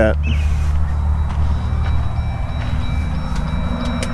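Jeep Wrangler JL's engine idling with a steady, even low rumble, with a few faint light ticks over it.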